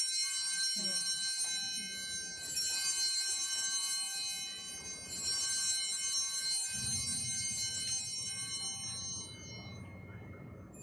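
Altar bells rung at the elevation of the host, struck again about two and a half and five seconds in, each ring hanging on and fading, dying away near the end.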